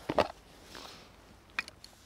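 Small handling sounds of a camera lens being changed, with one sharp click about one and a half seconds in, typical of a lens bayonet mount, followed by a couple of smaller clicks over faint rustling.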